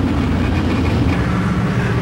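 Car engine running steadily with a low hum and road noise.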